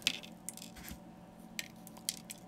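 Gritty basing mix of sand, flock, moss and small stones being pinched and sprinkled by hand onto a glue-covered miniature base, giving a few faint, irregular small clicks and rustles as the grains fall.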